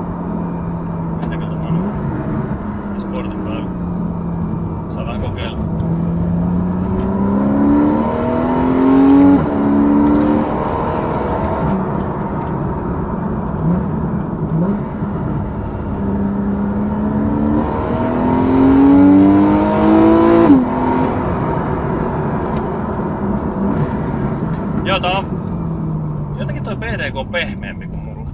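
Porsche 991 Carrera 4's 3.4-litre flat-six heard inside the cabin, pulling hard twice. Each time the engine note climbs to high revs and drops sharply at a PDK upshift, about nine and a half seconds in and again about twenty seconds in. Near the end the note falls away as the car slows.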